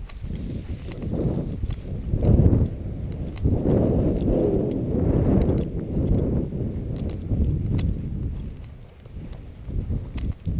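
Wind buffeting the camera's microphone as a low, uneven rumble, with the swish of footsteps through tall dry grass.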